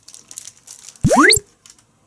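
Paper burger wrapper crinkling as it is pulled open. About a second in comes a loud, quick whistle-like sweep that rises steeply from low to very high pitch.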